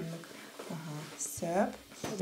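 Speech only: a man talking quietly in short phrases with pauses between them.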